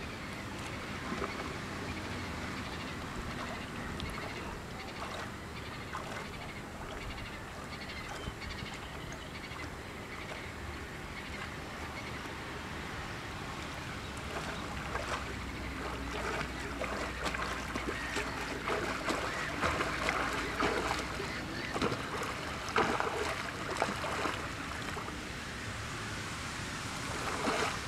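Small waves lapping against shoreline rocks of a reservoir, with the water becoming busier and splashier in the second half as a swimmer's ripples and strokes come closer to the shore.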